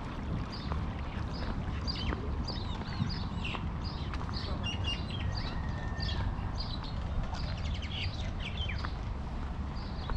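Small birds chirping in a long run of short, high chirps, two or three a second, over a steady low rumble.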